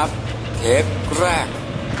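A man speaking Thai over background music, with a low steady hum beneath.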